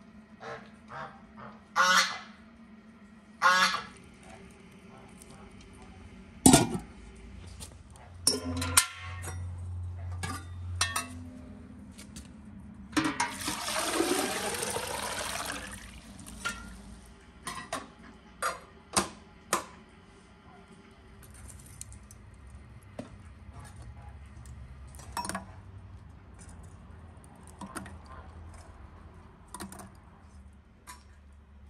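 Geese honking: two loud calls about two and three and a half seconds in, and a longer bout of calling around the middle. Between them come scattered sharp knocks and clinks of charcoal and metal tongs at a clay brazier.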